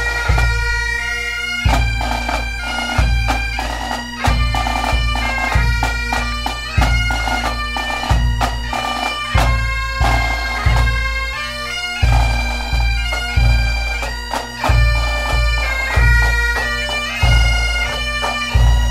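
Highland bagpipes, several pipers playing a tune together over their steady drones, with a bass drum beating under them about once a second.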